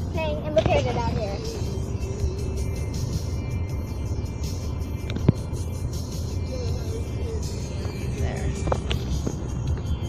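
Cabin noise of a car at highway speed: a steady low rumble of road and engine. A voice or radio music is heard over it in the first second and again from about six and a half seconds, and there is a single sharp click about five seconds in.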